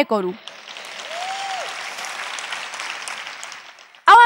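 Large audience applauding, building after the first half second and fading out just before the end, with one person's brief call about a second in.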